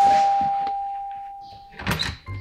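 Two-note doorbell chime: the second, lower 'dong' note strikes and rings out, fading over nearly two seconds. A short scuffing noise comes near the end.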